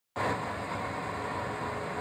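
Steady diesel-locomotive running noise, an even rumble and hiss with a faint steady whine, cutting in abruptly out of silence just after the start.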